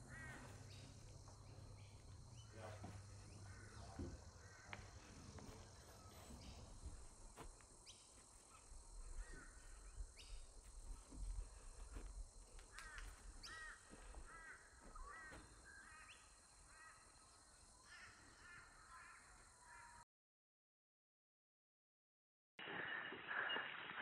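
Faint outdoor ambience with birds calling in runs of short, repeated chirps. About 20 seconds in the sound cuts out completely, and a louder, different recording starts near the end.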